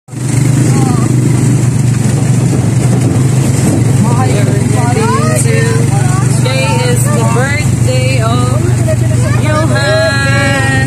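Motorcycle engine of a sidecar tricycle running at a steady pace under way, a low, even hum heard from inside the sidecar. High-pitched voices talk over it from about four seconds in.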